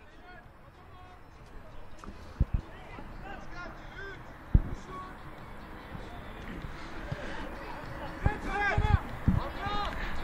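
Footballers calling out across an artificial-turf pitch, with a few sharp thuds of the ball being kicked, the loudest about halfway through.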